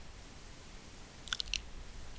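Fingernails crimping feather stems, a few faint small clicks about one and a half seconds in, over quiet room tone.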